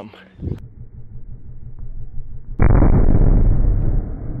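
Slowed-down audio of an overfilled weather balloon fed by a leaf blower. A deep rumble from the blower builds for about two seconds, then the balloon bursts with a sudden, loud, deep boom that is drawn out by the slow motion.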